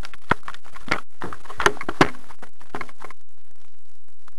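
Handling noise from a webcam being moved about: irregular clicks, knocks and bumps for about three seconds, then settling down.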